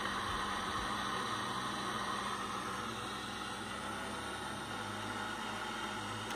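Dremel butane torch burning with a steady hiss.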